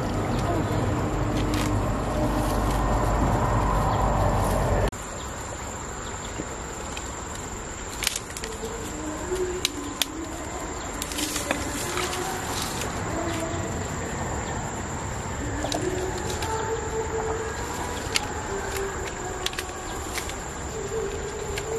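Water sloshing and splashing around hands working in a shallow creek, a loud, even rumble that stops abruptly about five seconds in. After that, dry reeds crackle and there are scattered sharp clicks of mussel shells being handled, with birds calling in the background.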